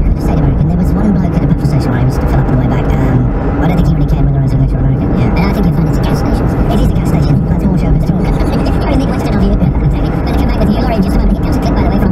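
Inside a car cabin at around 50 mph: steady road and engine rumble under a voice from the car radio.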